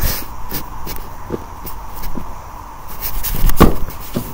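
Footsteps on a grassy yard scattered with dry leaves, with handling noise from a hand-held camera, and a single louder rustling thump near the end.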